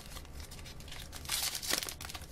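Paper disc sleeve being torn open and crinkled by hand: faint rustling, then a louder crackly burst of tearing paper near the end.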